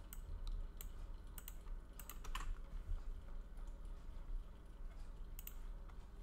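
Faint, irregular clicks from a computer mouse and keys being worked, in a cluster over the first two and a half seconds, then a pause, then a quick pair near the end, over a low steady electrical hum.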